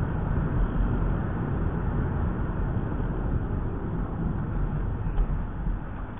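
A car driving, heard from inside its cabin by a dashcam: a steady rumble of road and engine noise, strongest at the low end.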